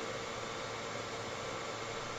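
Steady background hiss with a faint hum, the room tone picked up by a video-call microphone.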